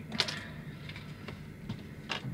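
Small hard plastic model parts clicking as they are handled and picked up off a tabletop: one sharp click about a quarter second in, then a few faint ticks.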